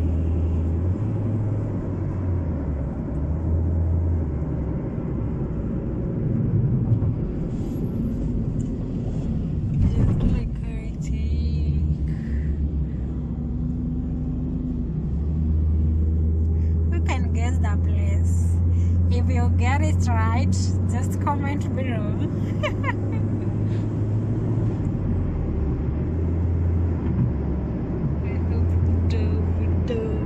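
Steady low rumble of road and engine noise inside a moving car's cabin, with a person's voice heard in the middle of the stretch.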